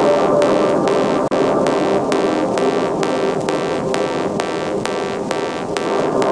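Background electronic music with a steady fast beat, about two and a half beats a second, over a dense layer of sustained synth notes; the sound cuts out for an instant about a second in.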